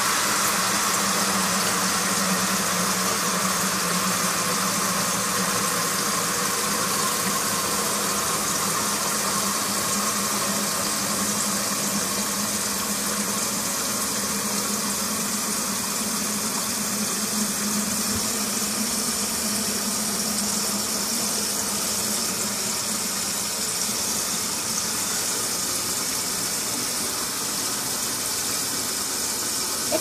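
Tap water running steadily into a container as it fills, a continuous rushing with a low hum beneath it.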